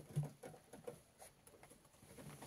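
Faint rustling and scattered light ticks of a rabbit moving about in wood-shaving bedding, with one brief low hum just after the start.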